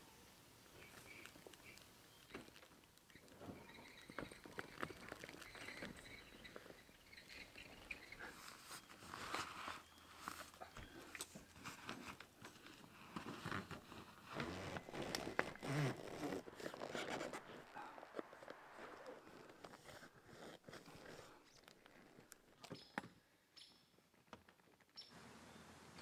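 Faint, scattered knocks, clicks and rustles of a truck camper's pop-up roof and canvas being pushed down by hand and lined up.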